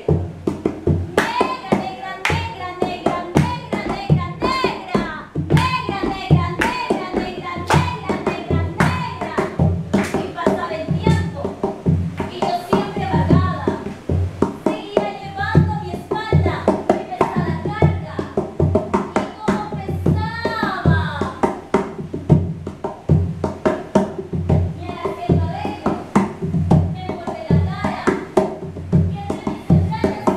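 Live singing over a steady beat of rhythmic handclaps, the voice carrying a melodic line while the claps keep time.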